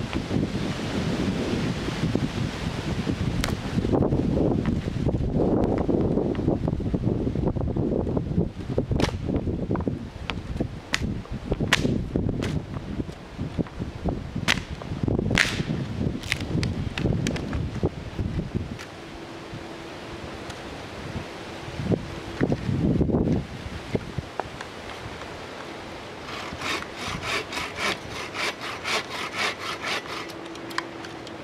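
Dry branches being handled and broken, with rustling and several sharp cracks as the wood snaps. Near the end, a bow saw cuts through a branch in quick, even strokes.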